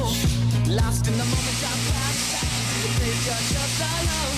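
Background music, with a steady rushing hiss starting about a second in from dry salt and paprika pouring and tumbling in a rotating stainless steel drum mixer.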